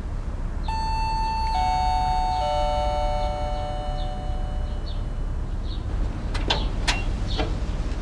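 Chime doorbell ringing three descending notes, struck about a second apart, each left to ring and slowly fade. A few sharp clicks follow near the end.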